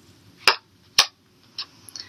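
Two sharp clicks about half a second apart, then a couple of faint ticks: tarot cards being handled, a card drawn from a small deck and snapped against it before being laid on the spread.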